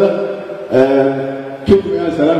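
A man's voice through a microphone, chanting a line in a recitation style and holding one long steady note about halfway through, followed by a short sharp knock near the end.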